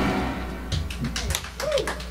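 The last acoustic guitar chord of the song dies away, then a small audience starts clapping in scattered, irregular claps, with one short vocal whoop among them.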